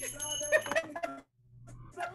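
A small brass hand bell shaken fast, its high ringing running on with laughter and stopping a little under a second in.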